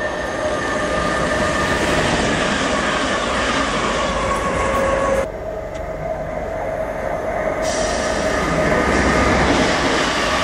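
Electric multiple-unit trains on the line through the station: in the first half an approaching train's steady whine of several tones over rail noise, then after an abrupt change about five seconds in, a Great Northern electric multiple unit drawing closer, its running noise growing louder.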